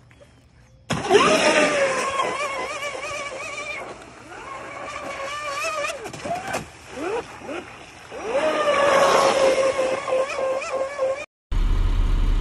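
Radio-controlled speedboat's motor running at high revs as it races across the water: a loud, high whine that starts suddenly about a second in and wavers up and down in pitch. It drops lower in the middle, then holds a steadier high note near the end before cutting off suddenly.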